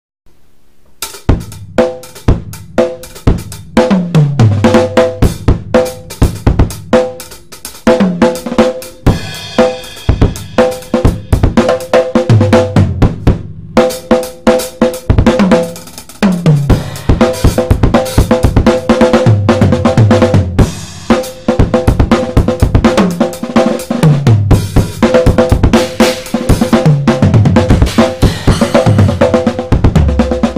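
Premier acoustic drum kit played in an improvised groove: snare, bass drum, hi-hat and cymbals, with fills that run down the toms, their old heads tuned low. It starts about a second in.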